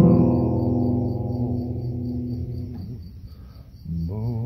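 A strummed acoustic guitar chord rings out and fades away over about three seconds, under a steady run of cricket chirps. The guitar starts playing again near the end.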